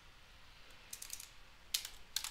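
Computer keyboard keys being typed: a few keystrokes about a second in, then a quick cluster of them near the end.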